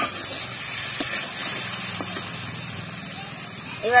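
Snakehead fish and potato pieces sizzling in hot oil and spice paste in an iron kadai, a steady hiss, with a few light clicks and scrapes of the metal spatula stirring them.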